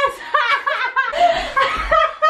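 People laughing, with high-pitched laughs and exclamations and a breathy stretch of laughter in the second half.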